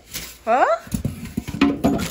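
Plastic bag crinkling and rustling as a hand grabs it inside a styrofoam shipping cooler, with irregular scrapes and knocks against the foam during the second half.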